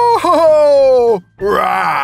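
A man's voice holding a long, high 'ooh' that wavers and then falls away, followed after a short break by a rough, raspy shout in a playful dinosaur-roar manner.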